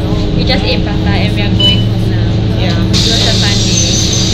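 Steady engine drone of a city bus heard inside the passenger cabin, with a steady hiss that starts about three seconds in.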